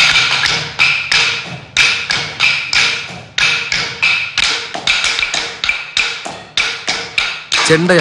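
Wooden drumstick striking a granite practice stone, the stone on which chenda drummers train their strokes. The sharp taps come evenly at about three a second.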